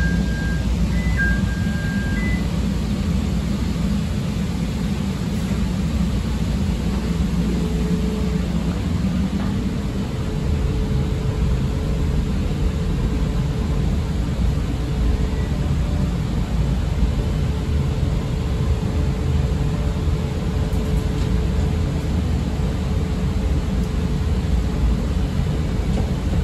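CTA 5000-series rapid-transit car leaving a station: a two-tone door chime in the first two seconds, then the low rumble of the car rolling on the rails. About eight seconds in, a steady motor hum comes in and holds as the train gets under way.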